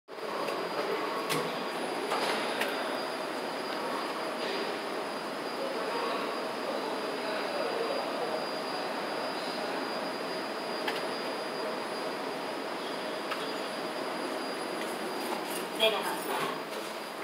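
Steady underground-station background noise: an even mechanical rush with a thin, high, steady whine over it, with a louder knock near the end.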